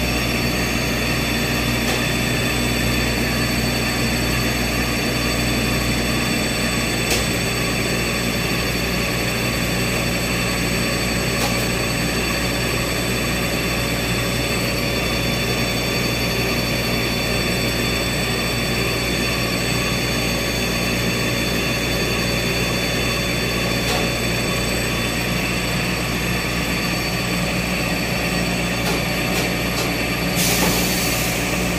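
CNC slitting and rewinding machine running, its servo-driven rollers and winding unit making a steady, even drone with several high whining tones over it and a few faint ticks.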